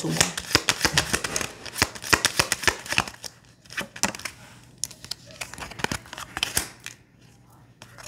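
Tarot cards being shuffled by hand: a dense run of quick papery flicks and clicks that thins out to scattered ones in the second half as cards are drawn from the deck.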